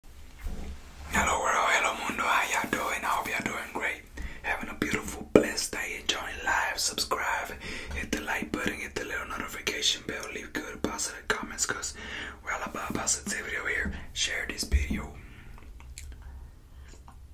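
A man whispering close to the microphone, stopping about a second before the end.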